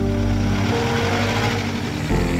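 A car pulling away: a rushing noise that swells and then cuts off suddenly at the end, over soft background music.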